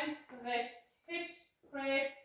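Speech only: a woman's voice calling out line-dance steps in German, about one word every half second.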